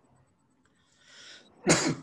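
A man takes a quick breath in, then gives one short, sharp cough near the end.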